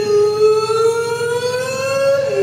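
A male rock singer holding one long high note that drifts slowly upward in pitch.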